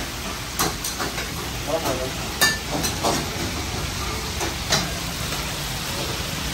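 Commercial kitchen cooking: food sizzling in steel karahi woks over the steady roar of open gas burners. Metal ladles and tongs clank against the woks every half second to second.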